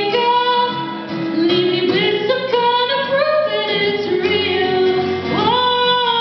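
A woman singing to acoustic guitar accompaniment, holding long notes; about five and a half seconds in her voice slides up into a sustained note.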